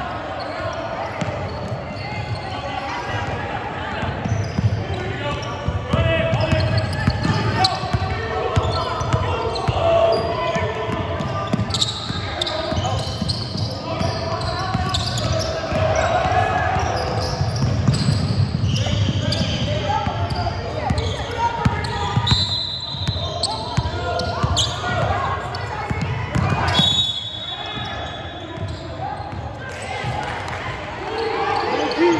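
A basketball game in a large gym: a ball bouncing on the hardwood court and sneakers moving, under the continuous voices of players and spectators.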